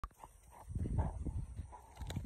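A dog giving a few short, high yelps, with low thuds of movement underneath, loudest around the middle.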